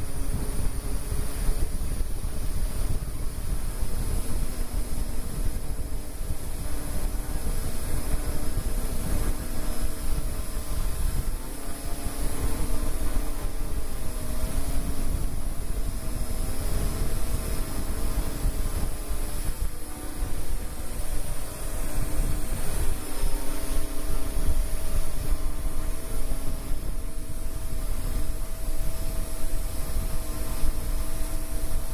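Parrot AR.Drone 2.0 quadcopter's electric rotors whirring, several tones wavering in pitch as the motors change speed, over a heavy rumble of wind on the microphone.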